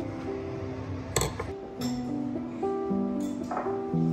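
Background music with held notes changing pitch, and a single sharp clink about a second in.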